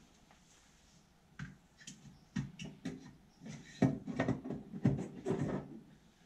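A run of knocks and clanks from a Masterbuilt digital electric smoker being handled, its parts worked right after loading hickory chips. The sounds start about a second and a half in, after a quiet start, and come quickly one after another.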